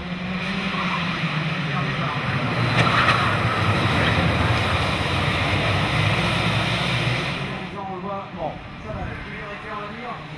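A pack of two-stroke racing karts accelerating away together from a race start: a loud, dense, many-engined buzz that swells about three seconds in and fades away about eight seconds in.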